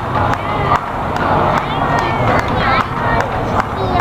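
Outdoor rehearsal ambience of a drum corps color guard: voices, with a steady run of short clicks keeping time about two and a half times a second, over a low steady hum.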